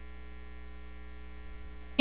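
Steady electrical mains hum, with no other sound over it.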